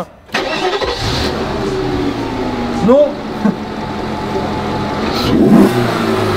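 Volkswagen Passat W8's 4.0-litre W8 engine, breathing through an open cone air filter, fires up just after the start and runs at idle, growing a little louder toward the end. Its intake noise is strongly noticeable.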